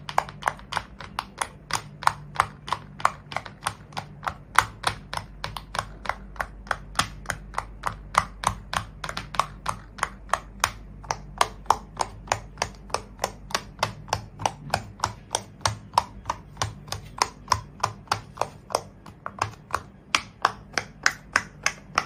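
Silicone pop-it fidget toys being popped bubble by bubble with a fingertip: a fast, even run of crisp pops, about four a second. The pops sound like a dimple fidget.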